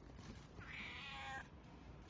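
Calico cat meowing once, a single short call of under a second.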